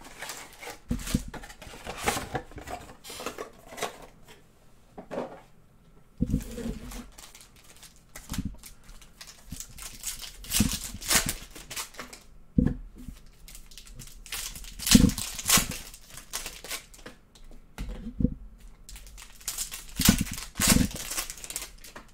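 A trading-card mega box being opened and its packs and cards handled on a table: irregular rustling of packaging with scattered taps and clicks as cards and packs are picked up and set down.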